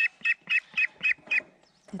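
Young mulard duck giving a quick run of short, high-pitched peeps, about four a second, while it is held down for a claw trim. The peeps stop about one and a half seconds in.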